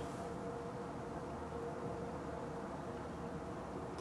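Quiet, steady room hum with a faint constant tone running through it; no distinct sounds.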